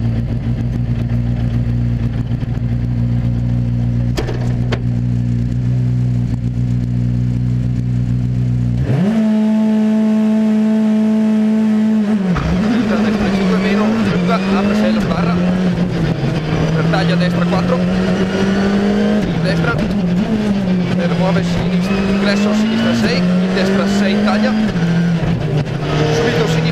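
Skoda Fabia R5 rally car's turbocharged four-cylinder engine, heard from inside the cabin. It idles for about nine seconds. Then the revs jump and are held steady for about three seconds before the car pulls away, the pitch rising and dropping with each upshift as it accelerates.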